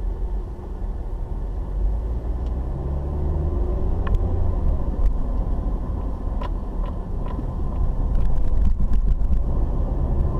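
Car driving, heard from inside the cabin: steady engine and road rumble, with a few scattered clicks and rattles and a quick run of them shortly before the end.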